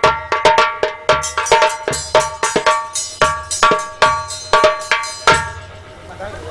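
Bell-like metal percussion struck in a quick rhythm, about three strokes a second, each stroke ringing out. A low drum beat falls under some of the strokes. The playing stops with a final stroke a little past five seconds in that rings away.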